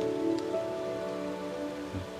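Soft background score of sustained chords held steadily, over a faint even hiss.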